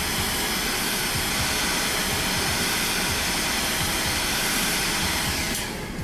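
Heat gun blowing steadily, heating the nose of a hydraulic control valve to trip its thermal switch. The heat gun shuts off shortly before the end.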